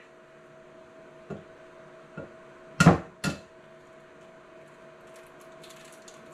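An egg knocked against the rim of a mixing bowl to crack it one-handed: two light taps, then two sharp knocks about half a second apart.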